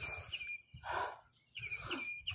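A small bird singing outdoors: a thin, high, steady note broken by short chirps. A brief soft breathy noise comes about a second in.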